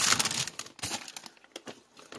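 Plastic packaging of frozen foods crinkling and rustling as packages are shifted around in a chest freezer, loudest in the first half second and then fading to scattered rustles.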